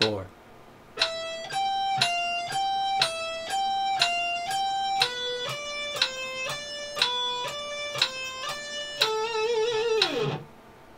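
Electric guitar playing a single-note exercise at 60 beats a minute, two notes to each beat alternating up and down, moving to a lower pair of notes about halfway, then ending on one held note with vibrato. A metronome clicks once a second underneath.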